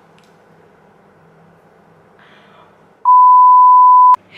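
Faint room tone, then about three seconds in a loud, pure electronic bleep, one steady tone, sounds for about a second and cuts off sharply; an edited-in bleep sound effect.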